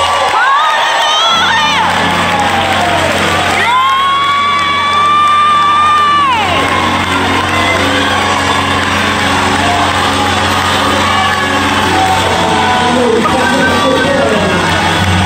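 Gospel choir singing with accompaniment while the congregation shouts and cheers. About four seconds in, a high voice rises onto one long held note for roughly two and a half seconds.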